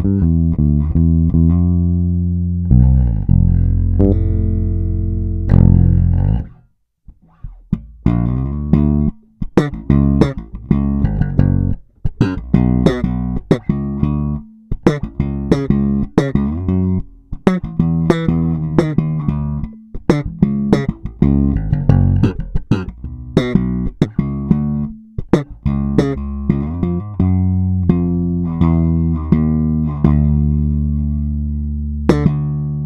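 momose MJB1 four-string Jazz-style electric bass played solo with plucked notes. It opens with a few held low notes, pauses briefly about seven seconds in, then plays a busier line of sharply attacked notes.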